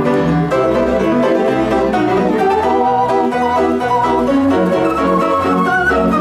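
An American Fotoplayer, a roll-operated theatre photoplayer, playing a one-step from a hand-played piano roll: piano-led music with a steady oom-pah bass about twice a second under the melody.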